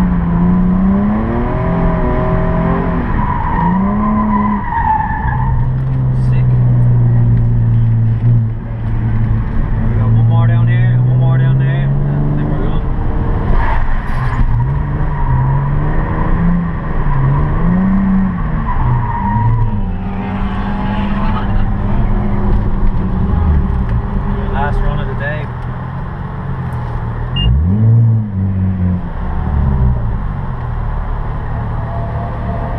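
Nissan 350Z's 3.5-litre V6 heard from inside the cabin, revving up and down repeatedly as the car is drifted round a wet cone course, with tyres skidding on the wet surface.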